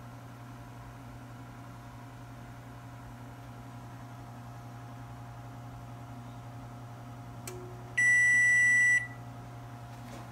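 KitchenAid Superba oven's control panel sounding a single loud, steady electronic beep about one second long near the end, signalling that the oven has finished preheating to 400°F. A steady low hum runs underneath throughout.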